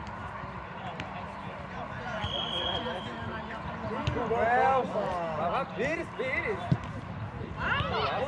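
Footballers shouting and calling to each other across an open pitch, with one sharp thud of a football being kicked shortly before the end.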